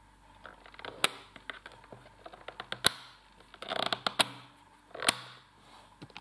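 Plastic clicks and rubbing from a Polaris PIR 2481K steam iron being handled at its steam-control dial: several sharp clicks with short scraping sounds between them.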